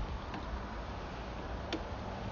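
Low steady background noise with a couple of faint ticks as a sewer inspection camera's push cable is pulled back out of the line.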